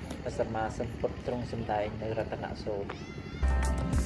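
High-pitched voices calling or talking in short phrases. About three and a half seconds in, background music with a strong low beat begins.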